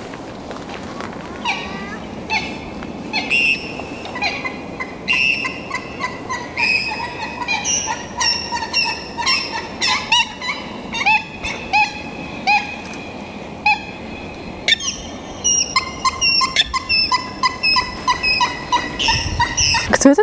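A flock of waterbirds on a lake calling, noisy and loud: many short, pitched calls that come thicker and faster in the second half.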